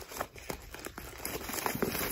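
Newspaper being crumpled and crinkled in the hands, a run of irregular small crackles and rustles.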